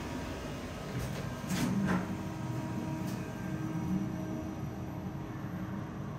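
Kone K-Delta elevator car travelling between floors: a steady ride hum inside the cab with a faint constant tone, and a few light clicks between about one and three seconds in.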